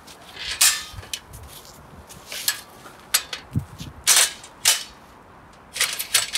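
A series of irregular sharp knocks and clacks, about eight over several seconds.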